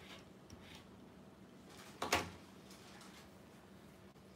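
Rotary cutter set down on a cutting mat, one sharp knock about halfway through, with faint fabric and handling rustles around it.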